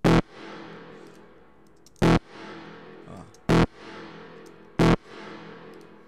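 A synth stab hits four times at uneven spacing. Each hit leaves a pitched reverb tail that dips right after the hit, swells back up and fades. The reverb is sidechain-compressed by the stab itself, so it ducks under each hit and does not clash with it.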